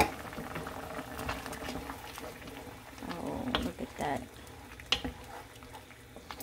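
Squid and sauce simmering in a pan, a steady low bubbling, with a few sharp clicks. About three to four seconds in there are brief pitched, wavering sounds.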